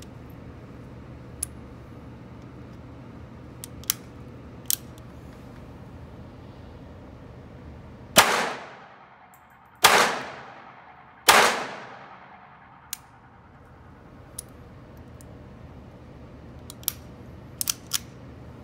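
Three shots from a Beretta 950B Minx .22 Short pistol, about a second and a half apart, each with a ringing echo in an indoor range lane. A few small, sharp clicks of the pistol being handled come before and after the shots, over a steady low hum.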